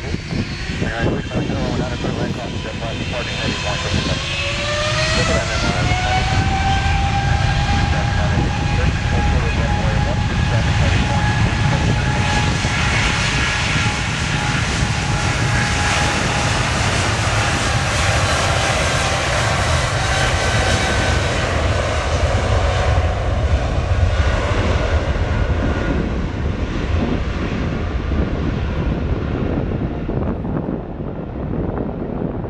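Boeing 777 freighter's GE90 turbofans spooling up to takeoff thrust, a whine rising in pitch a few seconds in, then a loud steady rumble with a high whine through the takeoff roll.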